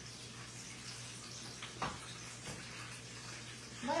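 Rolled tacos frying in hot oil: a low, steady sizzle, with one sharp click a little under two seconds in.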